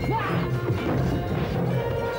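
Rhythmic action music over fight sound effects: repeated whacks and clashes of weapons striking in a melee.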